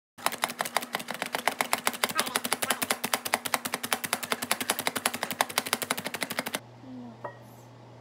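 Manual plunger food chopper pumped rapidly to chop nuts: a fast, even run of sharp plastic clacks, some seven a second. It stops near the end, leaving a low hum and a single knock.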